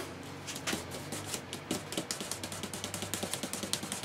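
Quick, light tapping of a small box filled with lead weight and liquid resin against the workbench, done to settle the mix level. The taps come sparsely at first, then several a second from about a second and a half in.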